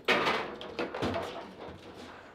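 Table football table in play: a sharp knock of ball and rods just after the start, the loudest sound, then a couple of fainter knocks.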